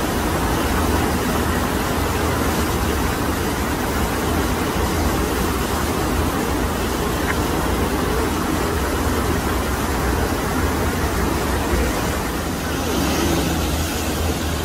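FlowRider surf simulator: a steady, loud rush of water shooting up the sloped wave surface.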